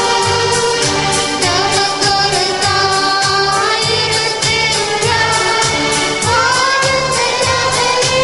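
A devotional song: singing over an accompaniment with a steady beat and a pulsing bass line.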